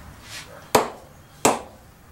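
An old four-piece leather cricket ball bounced on the face of an Aldred Titan English-willow cricket bat: two sharp, ringing knocks about 0.7 s apart, a test of how the bat's middle sounds.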